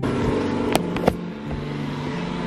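Handling noise from a handheld camera: its microphone rubbing against a terry-cloth robe as it is carried, with two sharp clicks about three-quarters of a second and a second in, over a steady low hum.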